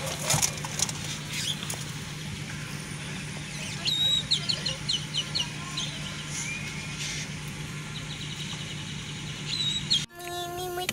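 Steady low hum of a car waiting at idle, with a quick run of high, bird-like chirps about four seconds in and again near the end.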